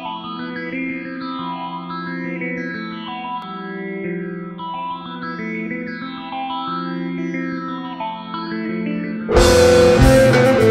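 Opening of a space rock track: an effects-laden guitar with chorus plays slow, sustained notes over a low held note. About nine seconds in, the full band comes in suddenly and much louder.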